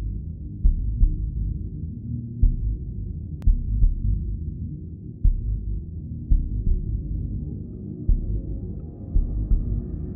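A low steady drone with deep thumps at uneven intervals, about one a second, like a slow heartbeat.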